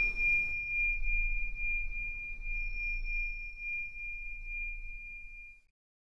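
A single high ringing tone from a struck metal chime, with a faint higher overtone over a low hum, dying away slowly and cutting off shortly before the end.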